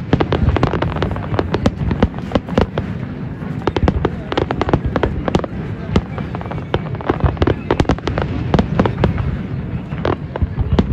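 Fireworks display: a dense, rapid string of sharp bangs and crackles as shells burst, over a continuous low rumble.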